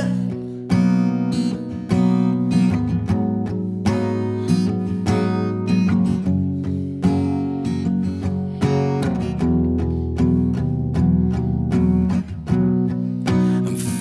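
Solo acoustic guitar playing chords in a steady rhythm, an instrumental passage with no voice.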